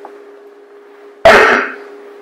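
A single short cough a little over a second in, over a steady low hum.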